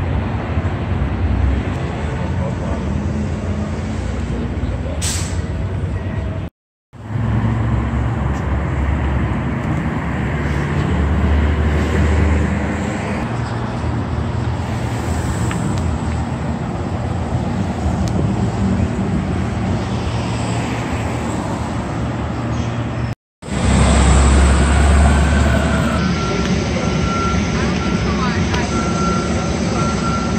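City street traffic: cars and heavy vehicles running past, with a steady low engine rumble that swells twice as bigger vehicles go by. The sound drops out completely for a moment twice.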